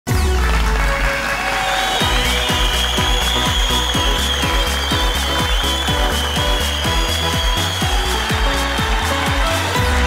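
Game-show opening theme music with a heavy bass and a steady, quick beat that kicks in about two seconds in.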